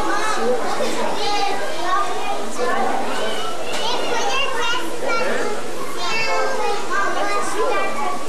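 Many children's voices chattering and calling over one another, a continuous jumble of high-pitched shouts and talk with no single clear speaker.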